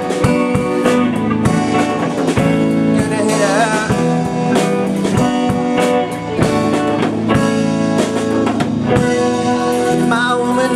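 Live blues-rock band playing between vocal lines: electric guitars, keytar and a drum kit keeping a steady beat.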